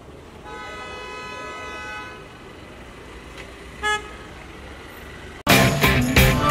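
A car horn sounds steadily for about a second and a half, then gives one short toot about four seconds in. Near the end, loud music starts suddenly.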